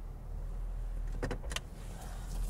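Car's low engine and cabin rumble heard from inside the car as it is slowly manoeuvred out of a tight street parking space, with a short cluster of sharp clicks a little over a second in.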